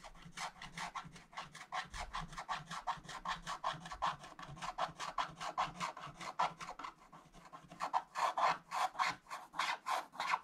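Wooden scratch stylus scraping the black coating off a scratch-art page in quick back-and-forth strokes, about five a second, growing louder near the end.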